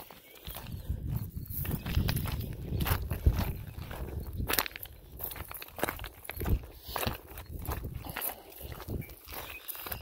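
Footsteps crunching over loose stones at an uneven walking pace, over a low, fluctuating rumble.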